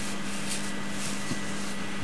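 Steady room tone of a rehearsal space full of powered music equipment: a constant low hum with a faint high-pitched tone over a soft hiss.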